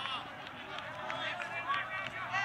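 Voices of players and sideline spectators shouting and calling out during play, with no clear words.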